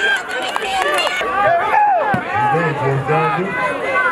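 Many overlapping voices of players and spectators shouting and calling out at a youth football game, with a few sharp clicks in the first second.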